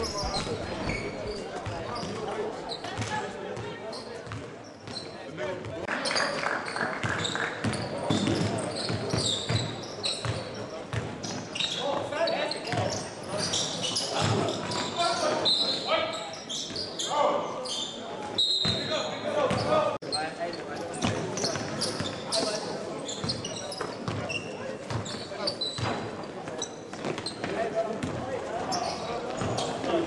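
Live sound of a basketball game in a gym: the ball bouncing on the hardwood court, with players' and spectators' voices calling out. A few short high squeaks come about halfway through.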